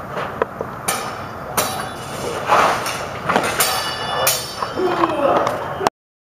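Steel practice longswords clashing in a sparring exchange: several sharp blade-on-blade strikes, one ringing briefly about three and a half seconds in.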